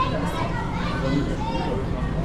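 Background chatter of visitors, children's voices among them, in a large indoor hall, over a steady low hum.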